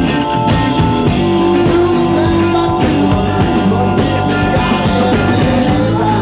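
Rock band playing live: drums striking steadily under held instrument notes.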